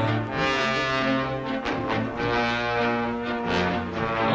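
Orchestral film score playing held brass chords that shift a few times.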